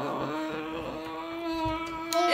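A person holding a long moan at one steady pitch, a pained reaction to the heat of very spicy noodles.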